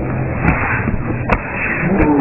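Muffled, low-fidelity ringside ambience from boxing fight footage, a steady dull noise with a low hum, broken by two sharp knocks about half a second and a second and a third in.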